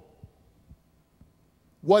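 Near silence: room tone with a few faint low thumps, then a man's speech resumes near the end.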